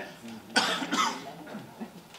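A person coughing twice, about half a second apart, starting about half a second in.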